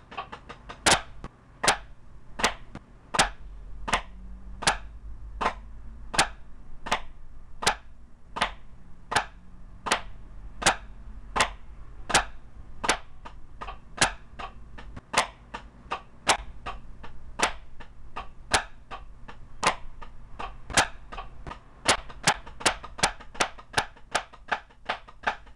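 Drumsticks striking a practice pad in a steady, even stream of sharp strokes, a few a second, some louder than others, as a drum rudiment is played at 80 bpm. The strokes come closer together for the last couple of seconds.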